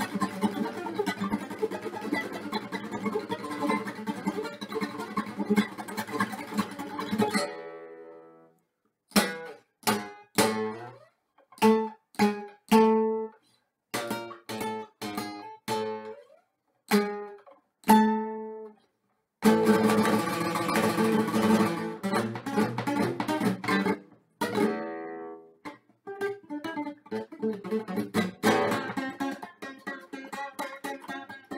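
Solo acoustic guitar, fingerpicked. A dense, fast passage fades out about seven seconds in. Then come single plucked notes and chords, each ringing briefly with near-silent pauses between them, and dense playing returns about twenty seconds in.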